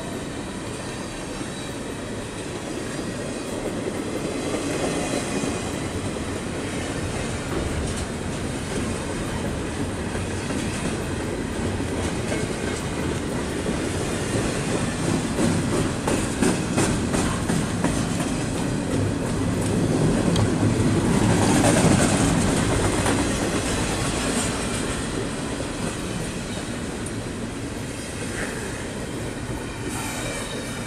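BNSF double-stack container train's well cars rolling past at close range: a steady rumble of steel wheels on rail, with a run of sharp clicks of wheels over rail joints in the middle and the loudest stretch a little after that.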